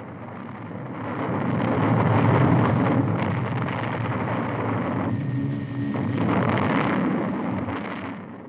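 A loud, continuous rumbling noise that swells twice and fades near the end.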